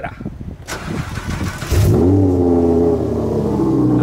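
Audi R8 engine started from cold: it fires about two seconds in with a short rising rev flare, then settles into a high cold idle whose pitch slowly drops and steadies.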